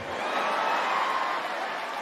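Theatre audience laughing as a crowd after a punchline, with some clapping. The laughter swells early on and then eases a little.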